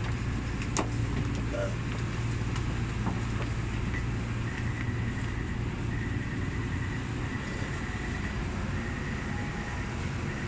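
Taipei Metro C371 train car interior: a steady low rumble as the train comes into a station. From about four seconds in, a high beep repeats in roughly one-second pulses.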